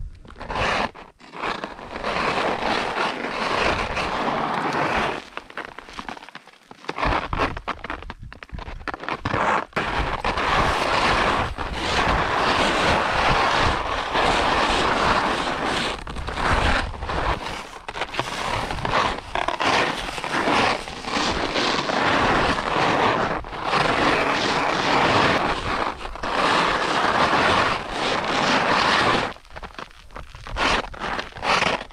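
Skis scraping across hard, icy snow on a steep descent, the noise coming in long runs broken by short pauses as the skier turns.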